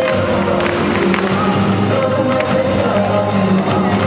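Flamenco music playing at a steady level with held notes, and a few sharp taps on top, fitting flamenco dancers' footwork.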